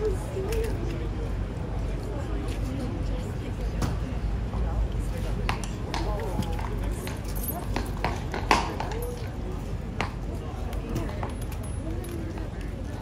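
People talking, with a few sharp clicks and clinks scattered through, the loudest about eight and a half seconds in.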